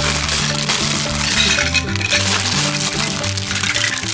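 Thin clear plastic bag crinkling and crackling as it is torn open and plastic toy food is tipped out, the crackle stopping shortly before the end. Background music with a steady bass line plays throughout.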